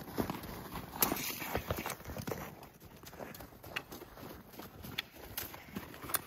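Footsteps of several children walking on a packed snow path, an irregular run of soft crunching steps a few per second.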